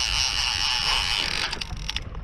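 Big-game 50-wide fishing reel buzzing steadily under the load of a hooked bull shark; the buzz stops about a second and a half in.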